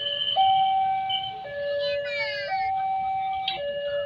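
Railway level-crossing warning alarm sounding a hi-lo two-tone signal, switching between a lower and a higher tone about once a second, which signals that a train is approaching. Voices, including children's, are heard over it.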